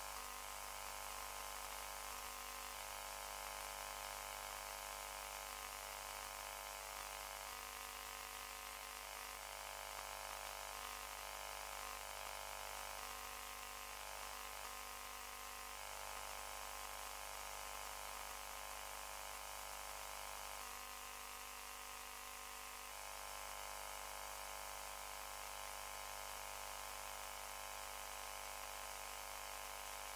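Quiet, steady hiss and electrical hum with several fixed tones: the background noise of the room and recording chain, with no clear event.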